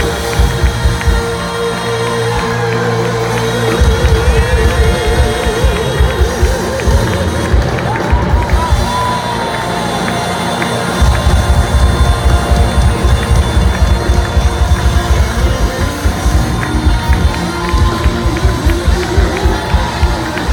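Live band playing loudly at a concert, heard from within the crowd: a long wavering held note in the first few seconds, then a driving kick-drum beat that drops out for a few seconds and comes back. A crowd cheers along.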